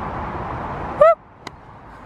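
Wind buffeting the microphone, cut short by a brief rising-and-falling call about a second in. Half a second later comes a single sharp click: a golf wedge striking the ball off the tee.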